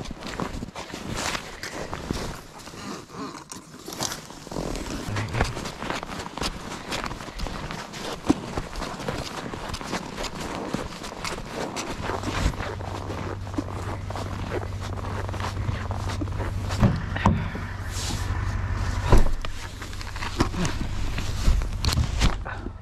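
Footsteps crunching through snow, with irregular scrapes and knocks of gear being carried. From about halfway through, a steady low hum joins in underneath.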